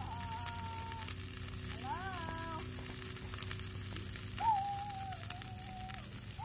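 Pieces of leftover meat sizzling and crackling steadily in a nonstick frying pan on a two-burner camp stove. A few short held tones sound over the frying, the loudest about four and a half seconds in.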